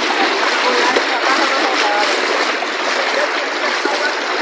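Steady wash of water and splashing as people wade through a flooded dirt road, with faint voices in the group.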